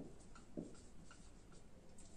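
Faint writing sounds: a few light scratches and ticks over quiet room tone.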